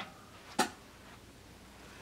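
Two short clicks against quiet room tone, one right at the start and a louder one about half a second in: handling noise as things are moved around the crib.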